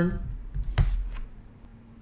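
A few keystrokes on a computer keyboard, with one sharp, louder key click a little under a second in.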